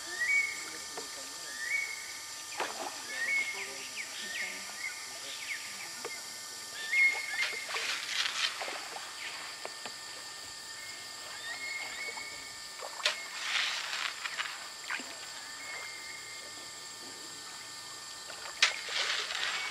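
Outdoor river sounds: a short whistled call, rising and then holding level, repeats every second or two, with scattered splashing and sloshing of water that is loudest about halfway through.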